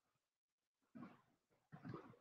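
Near silence: room tone, with two faint short sounds, one about a second in and one near the end.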